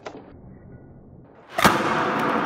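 A short click at the start, then a quiet stretch, then a sharp smack about one and a half seconds in as a skateboard lands on a concrete floor with the skater on it, followed by its wheels rolling on the concrete.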